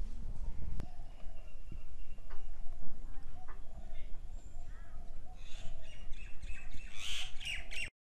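Birds calling repeatedly over a low outdoor rumble, with a busier run of sharper calls in the last two seconds before the sound cuts off suddenly.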